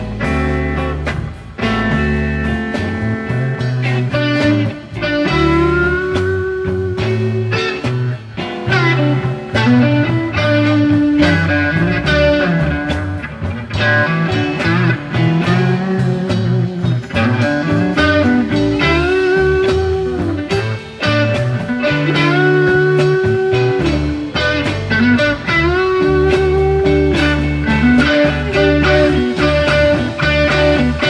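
Live rock band playing a slow, bluesy instrumental passage: an electric lead guitar solo with bent notes over bass and drums.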